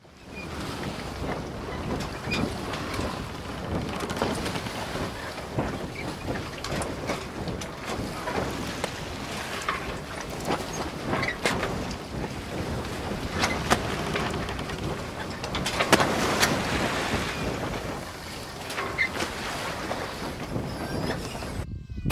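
Wind buffeting an action camera's microphone on an inflatable raft on the river, a steady rushing noise with many small scattered clicks and knocks, a little louder about two-thirds of the way through.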